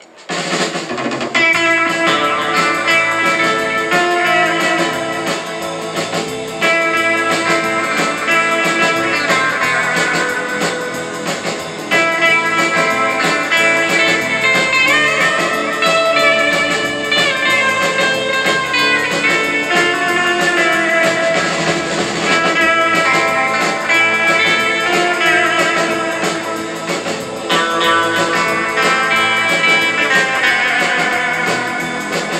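Live rautalanka music from a band: a twangy electric lead guitar carries the tune over rhythm guitar and a drum kit. The tune starts right at the beginning after a brief pause.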